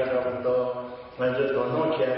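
Only speech: a man giving a talk, with a short pause about a second in.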